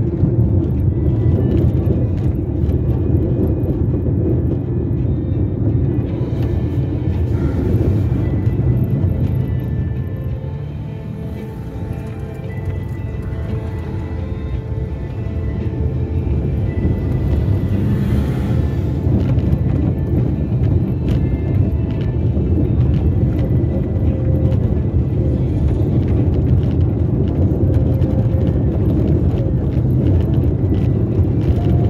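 Car cabin noise on the move: a steady low rumble of tyres and engine from the car being driven along a town avenue, easing a little around the middle. Music plays underneath.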